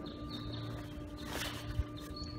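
A brief rustle of uniform trouser fabric as a trouser leg is pulled up, over a quiet background with a faint steady hum, and a small click near the end.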